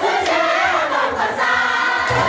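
A large crowd singing together in unison, like a choir, with many voices overlapping.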